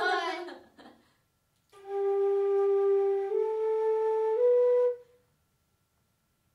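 A brief laugh, then a concert flute plays three held notes, each a step higher than the last, with a clear steady tone.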